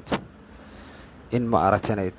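A man speaking into a phone's earphone microphone: a pause of about a second with only faint background hiss, then he starts talking again, his voice rising in pitch.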